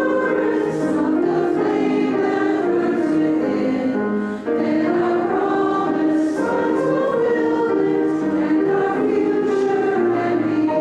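A congregation singing a hymn together in sustained notes, with a brief break between phrases about four and a half seconds in.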